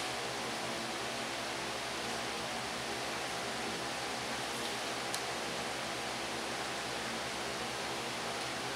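Steady hiss with a low hum underneath, the room and recording noise with no speech, and a single faint click about five seconds in.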